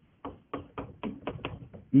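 Chalk writing on a blackboard: a quick series of about eight short taps and scrapes as a couple of words are chalked.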